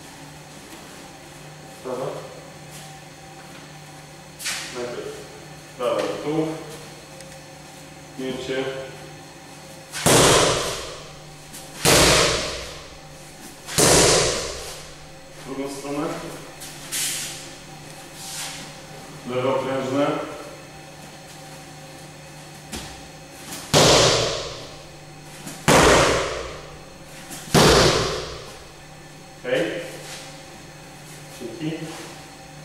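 Roundhouse kicks striking a handheld kick shield: six loud smacks in two sets of three, about two seconds apart, each with a short ring-off in the hall.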